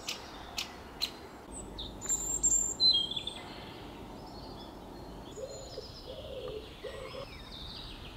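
Wild birds calling: a few sharp, short calls in the first second, a louder burst of high chirps about two to three seconds in, then fainter scattered calls.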